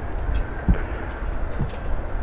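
Strong wind rushing over the microphone, a steady noisy rumble, with a brief low thump a little past half a second in.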